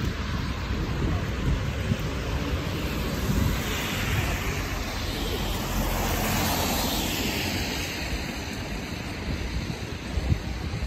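A car passing close on a wet street, its tyres hissing on the wet asphalt, swelling to a peak about six seconds in and then fading, over a steady low rumble of city traffic.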